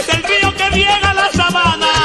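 Vallenato music in an instrumental break: a diatonic button accordion plays the melody over a steady bass-and-percussion beat.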